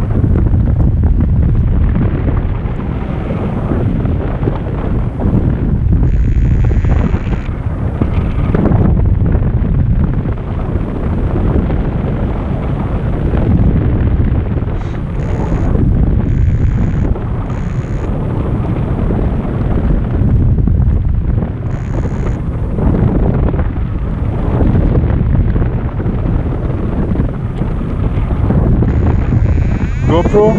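Loud, steady buffeting of the airflow on the microphone of a harness-mounted GoPro during paraglider flight: a deep rumble of wind noise, swelling and easing a little.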